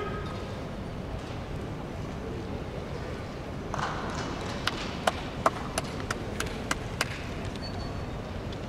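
Quiet sumo-arena ambience with a low background hum. Around the middle, a handful of separate, irregular hand claps come from the spectators.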